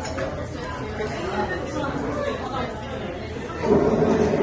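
Chatter of many voices in a busy restaurant dining room over a steady low background hum, with a louder nearby voice near the end.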